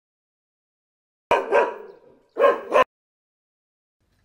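A dog barking: two short bursts of barks starting just over a second in, about a second apart.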